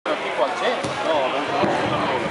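People talking indistinctly, with two short sharp knocks, one just under a second in and one near the end.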